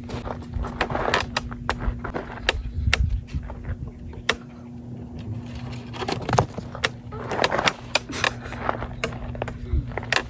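Footsteps crunching and scuffing on dry, gravelly dirt close to the microphone, with scattered sharp clicks and knocks, heaviest about a second in and again around seven seconds.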